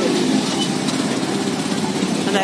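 A vehicle's engine running steadily at a low, even drone.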